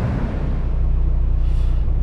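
A vehicle engine idling, heard from inside the cab as a steady low hum with a fine regular pulse. It sets in just after the start, as a brief stretch of wind noise ends.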